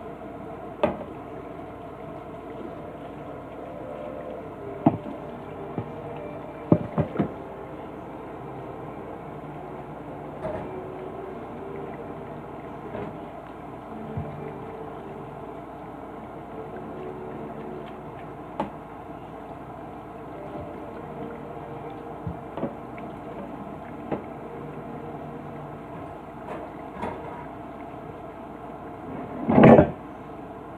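Dishes being washed under a running kitchen faucet: a steady rush of water, with plates and utensils clinking and knocking now and then as they are scrubbed and set down. The loudest clatter comes near the end.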